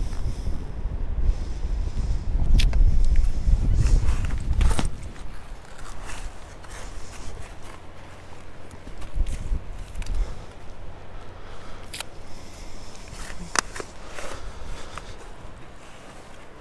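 Footsteps on wet beach sand, with scattered sharp clicks and knocks. A low rumble fills the first five seconds.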